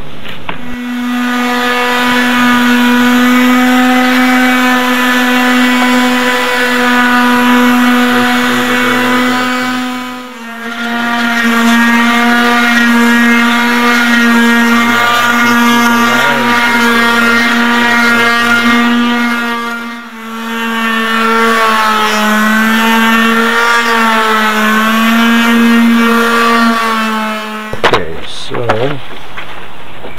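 Electric orbital finishing sander with 220-grit paper running steadily on mahogany, giving a high, even buzzing hum. The sound dips briefly twice, and its pitch wavers a little near the end.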